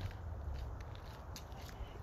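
A person walking on a path: a few faint footsteps over a steady low rumble on the microphone.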